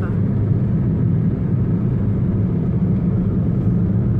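Steady road and engine noise inside a moving car's cabin, an even low drone.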